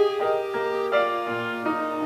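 Two clarinets playing a classical duet, with held notes that overlap and move to new pitches every half second or so.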